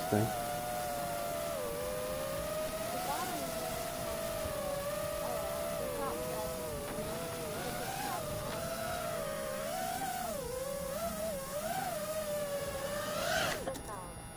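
FPV quadcopter's electric motors and propellers whining, the pitch wavering up and down as the throttle changes while it comes in to land. Near the end the whine swells briefly and then cuts off as the motors stop.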